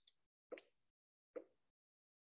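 Near silence broken by two faint, short pops, about half a second in and again about a second and a half in.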